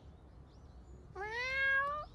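A cat's meow: one drawn-out call that starts a little over a second in and rises in pitch as it goes.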